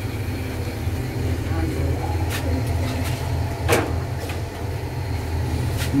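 A steady low rumble, with a few sharp metallic clinks against a large aluminium cooking pot as raw beef is mixed in it by hand; the loudest clink comes a little past halfway.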